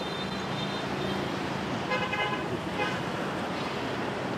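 A Hyundai Elantra sedan's engine running as the car pulls away. Two short car-horn toots sound about two seconds in, the second one fainter.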